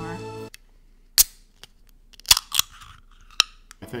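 A small aluminium can of carbonated orange soda being opened close to the microphone. There is a sharp click, then about a second later a louder crack of the pull tab breaking the seal with a short fizzy hiss, and a last click near the end.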